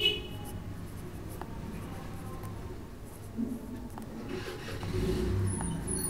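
Pen writing on paper, the nib scratching as words are written, louder for a stretch near the end.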